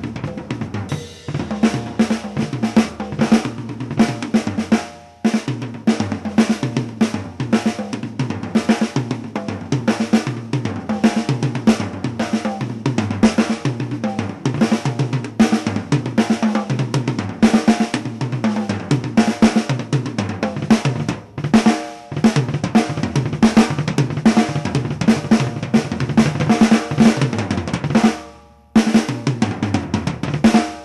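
Acoustic drum kit with double bass drum pedals played hard in fast fills and rudiment patterns across toms, snare and cymbals over a steady run of quick bass-drum strokes. It breaks off briefly three times, about five, twenty-one and twenty-eight seconds in.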